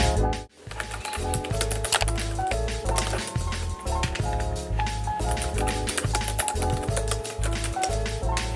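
Typing on a round-keyed Logitech wireless keyboard: a run of quick, clicky keystrokes. Background music with a steady beat plays under the typing.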